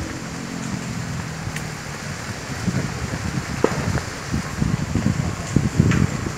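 Burning brush crackling and popping over a steady low rumble, with the cracks coming thicker in the second half.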